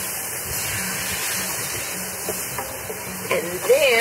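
Diced vegetables and tomatoes sizzling steadily in a stainless steel sauté pan as a wooden spoon stirs them, with a few light clicks in the second half.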